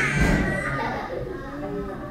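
Children's voices, high-pitched and chattering: a loud call at the start trails off into quieter talk.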